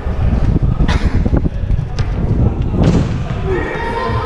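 Running footsteps and impacts of a parkour runner taking a run-up and jumping at a wall for an arm jump (cat leap): three sharp thuds about a second apart over a heavy low rumble from the moving GoPro.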